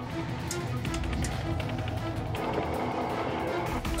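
Background music with steady held notes over a constant low rumble, with a few faint clicks.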